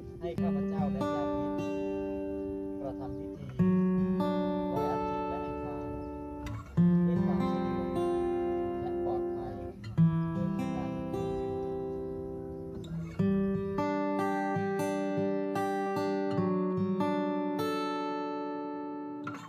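Background music: acoustic guitar chords, a new chord struck about every three seconds and left ringing out.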